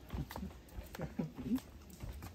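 Brief laughter and a short "yeah" near the end, over a low rumble and a few soft knocks.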